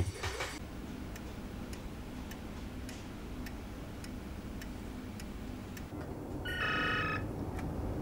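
Faint, even ticking over a low steady hum, and about six and a half seconds in a short electronic trill from an office desk telephone ringing.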